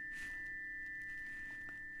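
Tuning forks from a chakra 'planet tuner' set, ringing on after being struck one against the other. A steady high tone, fading very slowly, sounds over a fainter low tone.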